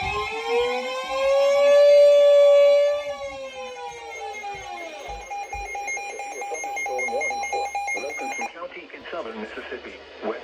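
Several weather alert radios sound their warning alarms at once. A siren-like tone rises and then falls away over about five seconds, over steady alarm tones that cut off suddenly near the end.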